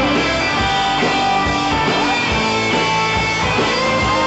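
A rock band playing live in a 1960s-style psych-pop vein: electric guitars over bass and a drum kit, a passage with no words, picked up by a camcorder's built-in microphone.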